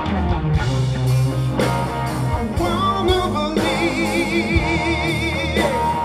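A live blues-rock trio plays: a man sings over electric guitar, bass guitar and drums. About halfway through, a long held high note with a wide vibrato comes in, and it stops shortly before the end.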